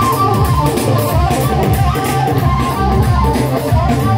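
Loud live band music: a plucked-string melody over a heavy, steady beat.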